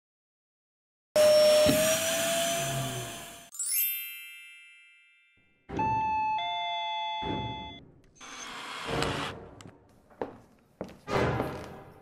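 Two-note 'ding-dong' doorbell chime, a higher note then a lower one, about six seconds in. Before it comes a loud rushing noise with a slowly rising whine for about two seconds, then a bright chiming ring that fades. Several short rushing sounds follow the chime.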